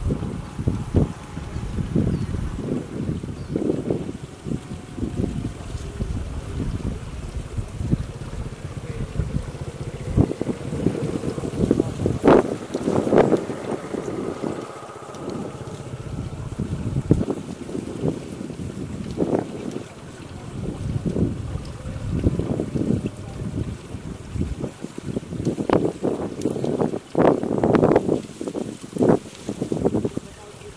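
Wind buffeting the microphone: an irregular low rumble that rises and falls in gusts, with stronger gusts about halfway through and again near the end.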